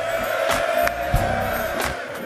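Live gospel band music: one long held note over a steady beat of drum and cymbal hits about every two-thirds of a second.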